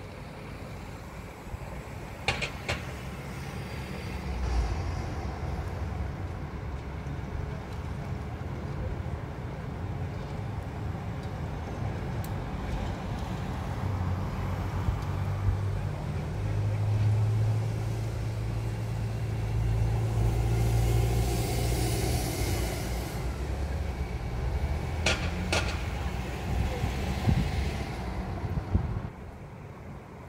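City road traffic: a steady low rumble of vehicles, with a heavier engine hum that builds and fades through the middle. A few sharp clicks come once early and again a little before the end.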